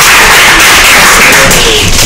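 Audience applauding steadily, many hands clapping together.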